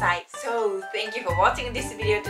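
A woman speaking over background music with a steady bass line; there is a short break near the start.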